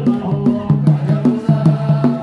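Men chanting an Ethiopian Islamic devotional chant (menzuma) together into microphones, over a quick steady beat of hand claps and percussion.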